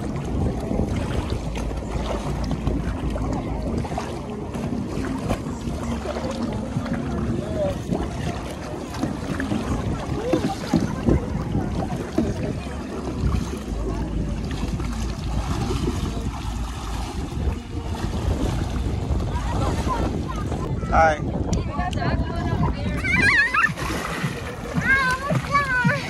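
Lake water splashing and sloshing around a kayak and people in the water, over a steady low rumble of wind on the microphone. From about 21 seconds on, high wavering voices, a child's among them, come in over the water.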